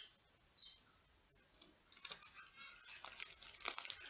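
Plastic packaging crinkling and rustling as it is handled, faint and sparse at first, then busier from about halfway through.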